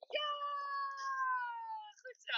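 A long, drawn-out vocal sound from a person, held for almost two seconds, high-pitched and slowly falling in pitch.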